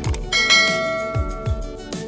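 A bell-like chime sound effect, of the kind laid under a subscribe-and-notification-bell animation, rings out about a third of a second in and fades away over about a second. It plays over background music with a steady beat.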